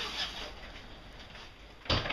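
Faint shuffling noise, then a single sharp clack near the end as an interior door's handle and latch are worked to open the door.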